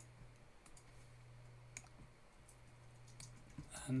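A few faint, sharp computer mouse clicks spread out over a low, steady hum.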